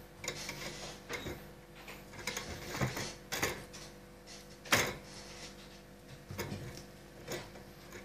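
Close handling sounds of a fishing rod's thread binding being worked by hand at a bench: scattered light clicks and rubs of fingers, thread and tools on the rod, the sharpest click a little past halfway, over a faint steady hum.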